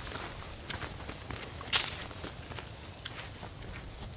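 A hiker's footsteps crunching on a dirt forest trail, irregular steps that fade a little as they move away, with one much louder sharp crack a little under two seconds in.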